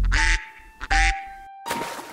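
Two short cartoon duck quacks, one at the start and one about a second in, then a splash of water near the end.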